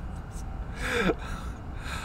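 A man catching his breath after laughing: two short breaths, the first, about a second in, carrying a short falling vocal sound. A steady low air-conditioner hum runs underneath.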